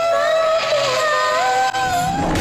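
A song with a woman's voice holding long sung notes over instrumental backing, the melody stepping up in pitch near the end.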